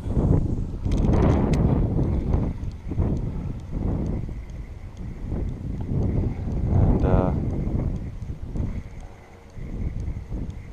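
Wind buffeting the microphone in gusts, with a short voice-like sound about seven seconds in.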